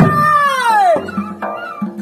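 A performer's loud, drawn-out vocal cry that falls steadily in pitch over about a second, then breaks off.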